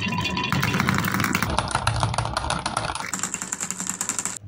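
Many marbles rolling and clattering along grooved wooden tracks: a dense run of rapid clicks and rumble that changes abruptly a few times.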